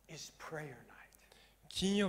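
Speech only: a man's voice talking softly, then louder near the end.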